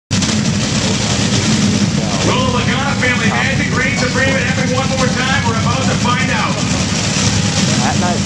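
A top fuel dragster's supercharged nitromethane V8 runs with a steady, loud rumble at the starting line, tyre smoke still hanging from the burnout. A voice talks over it for several seconds in the middle.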